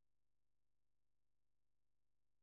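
Near silence: the audio track is essentially empty, with no audible sound.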